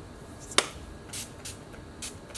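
A sharp click, then two short hisses of a pump-action makeup setting spray (NYX Matte Finish) being spritzed.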